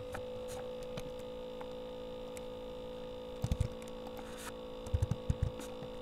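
Steady electrical mains hum from the recording setup, with a few soft clicks and low thumps about halfway through and again near the end.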